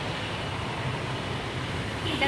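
Steady low outdoor rumble with an even hiss, with no distinct events.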